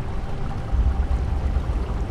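A steady low rushing rumble, heavier from about a second in.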